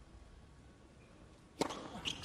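A quiet stadium hush, then about one and a half seconds in a single sharp pop of a tennis racket striking the ball on a serve.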